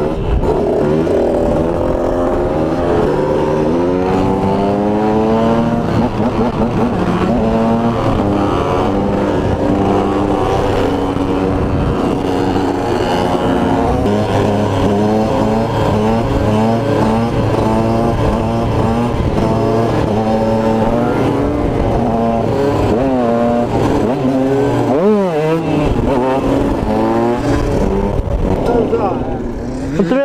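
KTM 125 supermoto engine revving hard as it rides, its pitch climbing and dropping again and again as it runs up through the gears, with a quick sharp blip about 25 seconds in; the engine eases off near the end as the bike slows.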